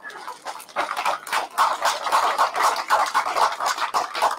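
Crowd of rugby spectators shouting and cheering together, a dense mass of overlapping voices.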